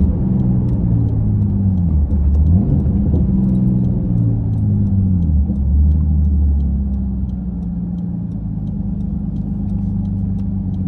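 Nissan Skyline R34 GT-T's turbocharged straight-six engine, heard from inside the cabin, revs rising and falling for the first few seconds, then settling to a steady idle about seven seconds in as the car stops at a light.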